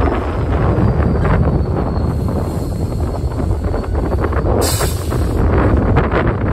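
Freight train passing close by: a BNSF GP38-2 diesel locomotive goes past, followed by rolling centerbeam flatcars loaded with lumber, in a steady deep rumble with wind buffeting the microphone. A brief hiss comes about five seconds in.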